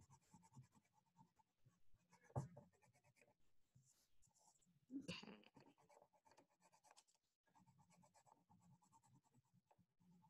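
Faint scratching of a wax crayon colouring a paper circle, in many quick strokes. Two brief soft sounds come about two and a half and five seconds in.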